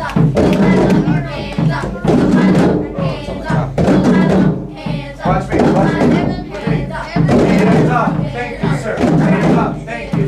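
Music from a school drum circle: voices chanting or singing over hand drums, with thuds from the drums.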